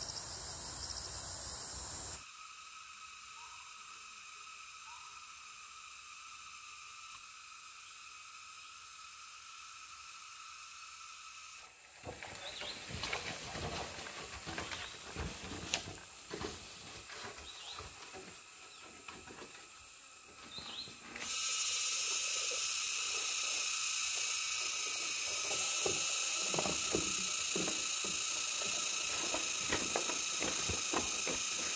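Steady chorus of forest insects ringing in several high pitches, its loudness jumping suddenly up and down a few times. From about twelve seconds in, irregular rustling and snapping of leaves and undergrowth as a person moves and walks through dense vegetation.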